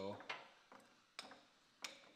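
A quiet stretch with three sharp, light clicks or taps, spread about half a second to a second apart.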